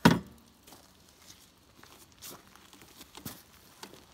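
A sharp knock at the start, then faint scattered clicks and rustling as a Yamaha TW200 dual-sport motorcycle is tipped over onto its side by hand to drain water from its flooded air box.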